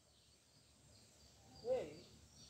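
Quiet outdoor background with faint, short high-pitched chirps. Near the end comes a brief vocal sound from a person, rising and then falling in pitch.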